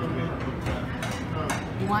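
Background chatter of people in a busy restaurant, with a short click about one and a half seconds in.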